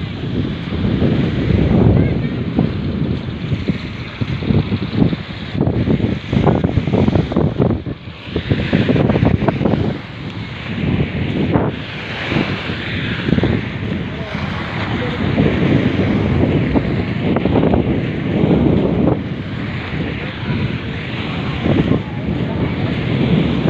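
Wind buffeting a phone's microphone in uneven gusts, over the wash of surf on a beach, with indistinct voices of people around.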